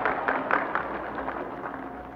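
Crowd applause dying away, played back from an old vinyl record with a faint steady hum beneath it.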